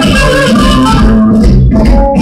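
Live electric blues band playing loudly: electric guitars, bass and drums, with a harmonica cupped to a handheld vocal microphone giving held, reedy notes.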